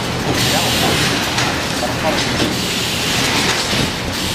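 Steady factory-floor din: machinery running and steel slide rails being handled, with faint voices underneath.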